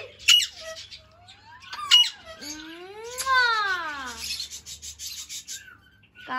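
Alexandrine parakeets calling: two sharp, loud squawks about a third of a second and two seconds in, thin rising whistles between them, then one long call that rises and falls in pitch.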